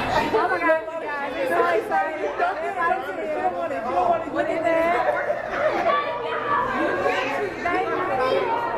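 Group chatter: several people talking over one another at once, with no single voice standing out.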